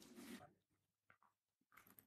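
Near silence: a brief soft rustle at the start, then a few faint scattered clicks.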